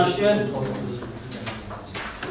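A man's voice finishing a sentence in a meeting room, then lower room noise with a few faint clicks or rustles.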